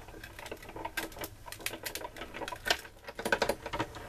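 Hand-cranked Cuttlebug die-cutting machine feeding a cutting die and plastic sheet between its plates through the rollers, a quick irregular run of clicks and creaks from the crank and rollers.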